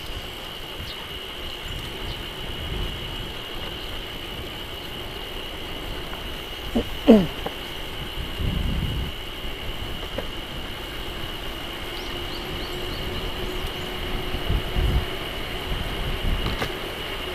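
Outdoor riding noise from a bicycle on a rural road: a steady high-pitched drone and low rumbles of wind and road. About seven seconds in comes one short cry that falls steeply in pitch.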